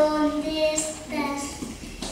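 A child singing, holding long drawn-out notes.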